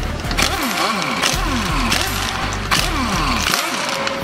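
Impact wrench with a 17 mm socket undoing a car's wheel bolts, running in several short bursts over background music.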